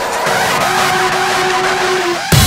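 A drumless breakdown in a dark drum-and-bass track: a hissing, noisy texture with a held low note and small repeating arcs of tone above it, with no beat.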